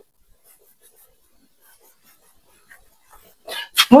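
Faint, soft rubbing of a cloth wiping marker off a whiteboard, with scattered light scuffs; near the end a breath, then a woman starts speaking.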